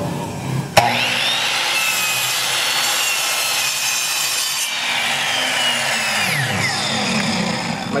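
A Ryobi sliding miter saw starts about a second in, its motor whine rising, and cuts through a wooden skateboard deck for a few seconds. The blade then spins down with a falling whine.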